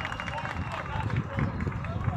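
Outdoor city ambience heard from high up: faint distant voices under irregular low rumbling of wind on the microphone.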